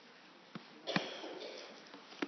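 A short sniff close to the microphone about a second in, with a faint click before it, over the quiet tone of a large room.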